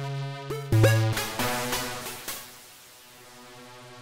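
Thor synthesizer in Reason playing a few bright, buzzy synth notes through its wave-shaper distortion, each note starting with a quick upward pitch swoop. The shaper is switched from Saturate to Sine mode with the drive turned down. After about a second the notes fade into a soft decaying tail.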